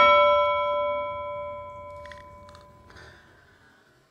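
A single bell-like chime sound effect, struck once and ringing with several clear tones that fade away over about four seconds.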